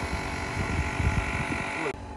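Portable electric tyre inflator running steadily with a buzzing motor hum while pumping up a car tyre, then cutting off abruptly near the end.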